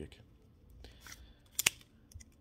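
Pokémon trading cards sliding against one another as a stack is flipped through by hand, with small clicks and one sharp snap of card edges near the end.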